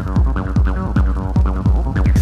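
Early-1990s hardcore techno played from vinyl in a DJ mix: a fast, regular kick drum, about three beats a second, under a held synth chord.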